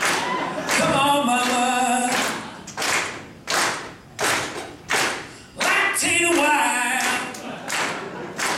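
A man singing unaccompanied, with a run of about five evenly spaced hand claps in the middle before the singing comes back.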